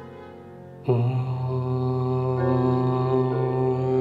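A man's voice chanting a long, steady Om at one low pitch, starting suddenly about a second in and held to the end, over soft background music with sustained tones.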